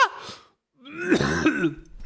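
A man's voice makes a rough, throat-clearing-like noise lasting about a second, starting near the middle. Just before it, a high, drawn-out vocal sound ends, falling in pitch.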